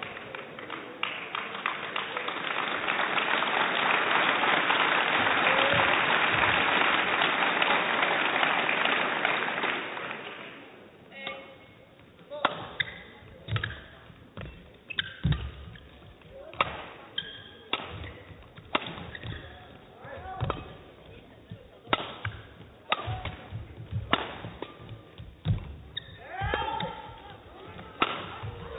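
Crowd applause and cheering that swell and then fade over about ten seconds. Then a badminton rally: a run of sharp, irregular racket strikes on the shuttlecock and players' footfalls on the court.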